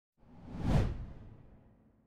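A single whoosh sound effect with a deep low body, swelling quickly to a peak just under a second in and then fading away.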